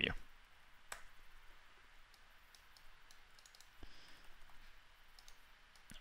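A few faint, scattered clicks of a computer mouse and keyboard over quiet room tone: one clear click about a second in, then several softer ones towards the end.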